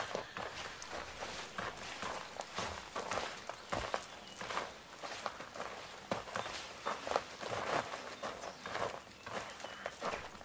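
Footsteps of someone walking, uneven steps about one to two a second.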